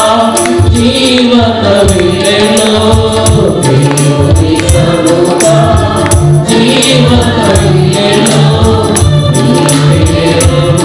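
Mixed choir of men and women singing a Telugu Christian worship song in unison, with a tambourine shaken and struck in rhythm and a pulsing low bass beat underneath.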